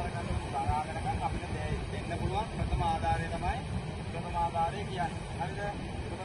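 A man's voice speaking in short phrases, addressing a group, over a steady low rumble of wind and surf.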